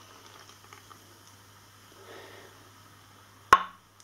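Beer being poured from a bottle into a pint glass: a faint trickle and fizz. Near the end there is one sharp click.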